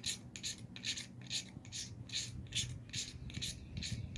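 A toothed steel striker scraping shavings off a magnesium fire-starter block in quick repeated strokes, about three a second: a dry, raspy filing sound.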